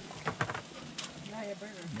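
Metal barbecue tongs clicking a few times against a charcoal grill grate as strips of pork belly are turned, with a voice in the background.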